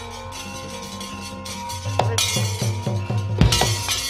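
Javanese gamelan accompanying a wayang orang fight scene. Sustained ringing of bronze metallophones is struck through by sharp metallic clashes, the loudest about three and a half seconds in. From about two seconds in, a run of quick, evenly spaced drum strokes joins them.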